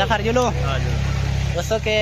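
Men's voices talking over a steady low rumble.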